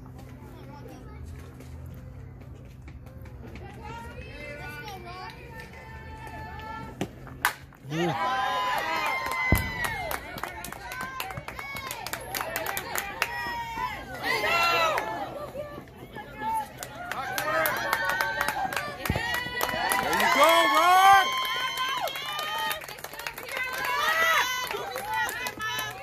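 A single sharp crack about seven and a half seconds in, typical of a softball bat meeting the ball. Right after it, spectators and players cheer and shout loudly, many high-pitched voices at once, with some clapping.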